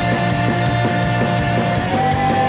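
Rock band playing live: electric guitars, bass guitar and drums on a steady beat, with one long held note above them that steps up slightly near the end.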